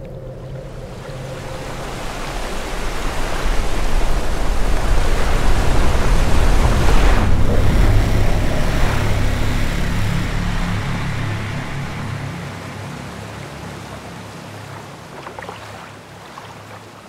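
Rushing water and wind noise over a low rumble, swelling to a peak about halfway through and then slowly fading away.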